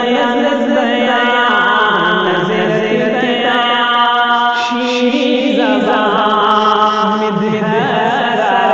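A male voice singing a naat, an Urdu devotional poem in praise of the Prophet, in a chant-like style, drawing out long held notes with slow slides in pitch, over a steady low drone.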